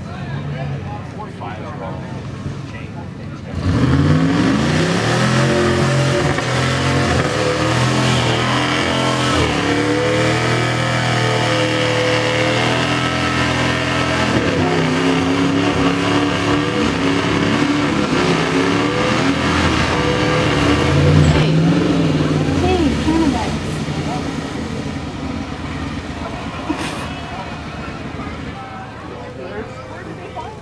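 A mud truck's engine revving hard at full throttle as it drives through a mud bog pit. It starts suddenly about four seconds in, with its pitch rising and falling with the throttle, and fades after about twenty seconds.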